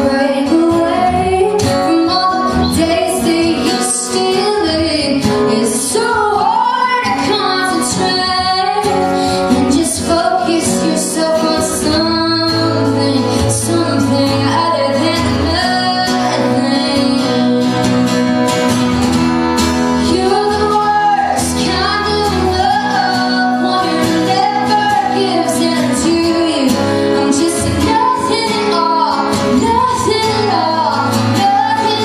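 A woman singing a song live, accompanied by two strummed acoustic guitars.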